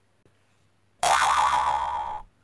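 Cartoon boing sound effect for a comic trampoline jump: a springy twang that starts suddenly about a second in and lasts just over a second.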